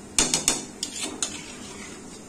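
A utensil knocking and scraping against an aluminium pot while a chicken curry is stirred: a quick run of clatters in the first second and a half, the loudest about a fifth of a second in.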